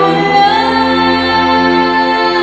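Woman singing into a handheld stage microphone over musical accompaniment; she moves onto a new note about half a second in and holds it steadily.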